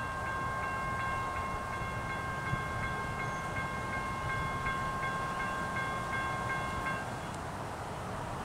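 Multi-chime air horn of an approaching Norfolk Southern freight train's lead locomotive, an EMD SD70ACe, sounding one long steady chord. The chord stops about seven seconds in, leaving a low rumble.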